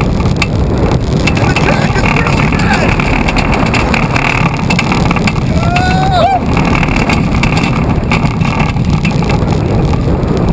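Gerstlauer Eurofighter roller coaster train running at speed along its steel track, heard as a loud steady rush of wind and track rumble on an on-ride camera. A rider gives a short yell about six seconds in.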